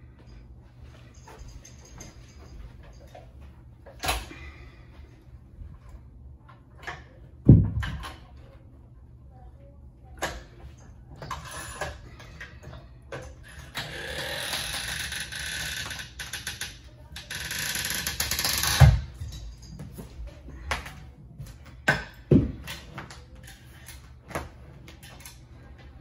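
A Triforce carpet power stretcher being set and worked. There are several heavy thumps as the tool is set down and bumped on the carpet, the loudest about seven and a half and nineteen seconds in. Between about fourteen and nineteen seconds there are two long scraping, rustling noises as the lever is worked and the carpet is drawn tight to stretch out its wrinkles.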